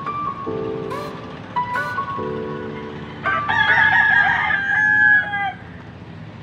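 A rooster crows once about three seconds in. It is a call of about two seconds that drops in pitch at the end, and it is the loudest sound here. Under it runs background music with a repeating pattern of held notes.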